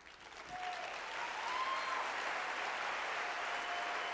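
Audience applauding, swelling over the first second and then holding steady, with a few faint held tones running through it.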